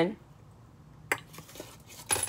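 Quiet hand-handling sounds as a small paper slip is folded: one sharp click about a second in, then a few faint ticks.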